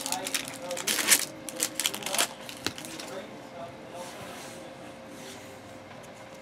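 A stack of baseball trading cards being handled and squared on a tabletop: a quick run of card flicks and taps in the first couple of seconds, then quieter rustling and the odd tick.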